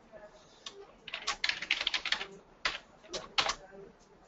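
Typing on a computer keyboard: a quick run of keystrokes about a second in, followed by a few separate key presses near the end.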